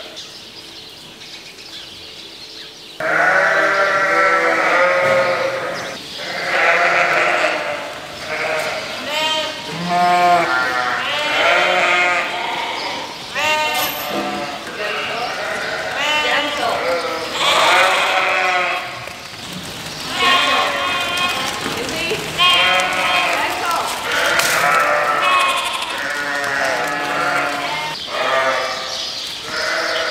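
A flock of ewe lambs bleating, with many calls overlapping continuously. The calls start about three seconds in, after a quieter moment.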